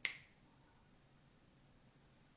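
A single sharp finger snap, the middle finger flicked off the thumb.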